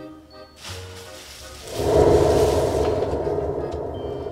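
A dramatic music sting for a monster reveal. It starts quiet, swells suddenly into a loud, dense low sound a little under two seconds in, then slowly fades.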